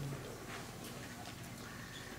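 A quiet pause: low room hum with a few faint clicks or taps.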